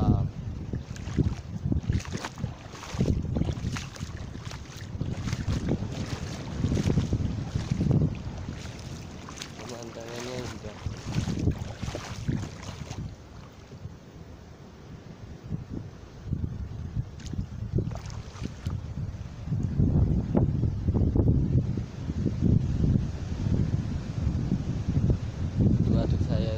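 Wind buffeting the phone's microphone in gusts, over the wash of sea surf; it eases off for a few seconds midway, then picks up again.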